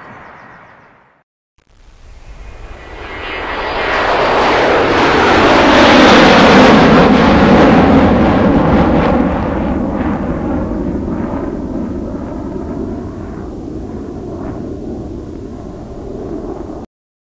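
An airplane's engines, swelling from a brief silence near the start to their loudest about six seconds in, then slowly dying away, as a plane passes during takeoff.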